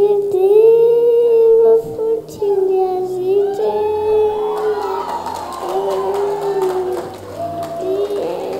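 A small girl singing long, held notes into a stage microphone, over soft musical backing.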